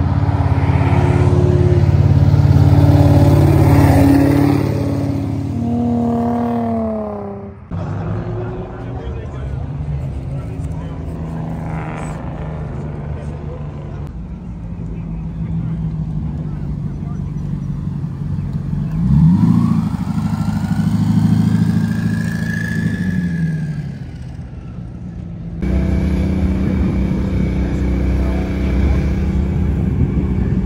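Sports and supercar engines driving past one after another in several short clips, accelerating with exhaust revs. A sharp rising rev comes a little after the middle, and another car's pitch falls as it passes near the start.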